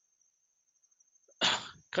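A man sneezes once, a single sharp burst about one and a half seconds in, after near silence.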